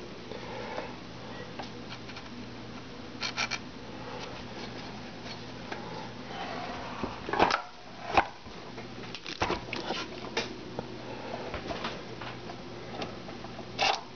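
Handling noise: scattered light clicks and knocks, with a couple of sharper knocks in the middle, over a steady low hum.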